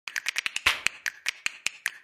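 Intro sound effects: a regular run of sharp clicks, about ten a second at first and then slowing to about five a second, with a short whoosh among them.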